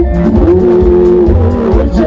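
Zimbabwean sungura band playing live: bass guitar and drum kit keep a steady beat under sustained lead notes that slide and bend in pitch.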